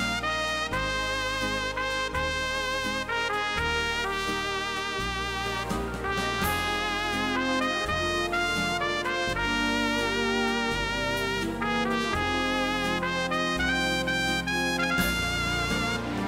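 Lowrey Fanfare home organ playing a tune with a brass-like lead voice over a bass and rhythm accompaniment.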